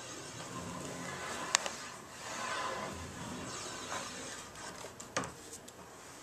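Handling of a ski-waxing iron and wax block on a ski: soft rubbing and scraping, with a sharp click about one and a half seconds in and a knock about five seconds in.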